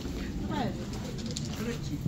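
Indistinct background voices of people nearby, with one voice sliding down in pitch about half a second in.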